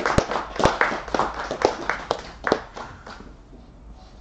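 Audience clapping after a talk, the separate claps easy to pick out, thinning out and stopping about three seconds in.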